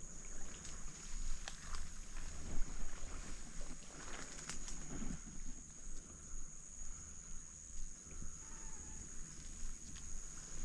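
Close, soft rustling and swishing of tall grass and a leafy camouflage suit as a bowhunter creeps slowly through cover, with a few small crackles of twigs, busiest about halfway through. A steady high-pitched whine sits underneath.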